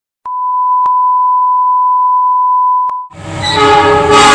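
A steady, single-pitched electronic beep held for nearly three seconds, then cut off. A locomotive horn follows at once, several notes sounding together and growing louder, over a low rumble.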